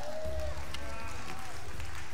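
Faint voices in the room over a low, steady rumble, with a few light clicks; no loud event.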